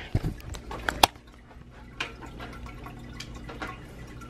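Home aquarium's air bubbler and filter bubbling and trickling at the water surface. A few knocks in the first second and a sharp click about a second in stand out above it.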